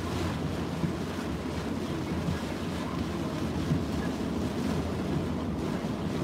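Steady rush of storm wind, heavy rain and tyres on a wet road, heard from inside a moving car's cabin.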